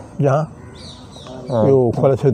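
A man's voice speaking in short phrases. Faint bird calls are in the background during a pause.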